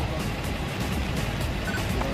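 Steady outdoor street noise with a traffic hiss, under a background music bed.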